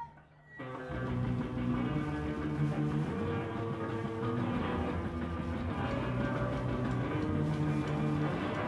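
A live rock band of electric guitars, bass and drums launching into a song with a sudden start about half a second in, then playing on at a steady level.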